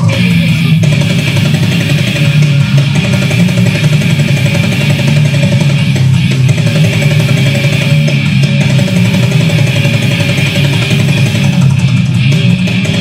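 Slamming grindcore band playing live, led by electric guitar, loud and continuous.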